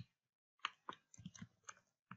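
Faint, irregular clicks of computer keyboard keys being pressed, a handful of separate taps as one word is erased and another typed.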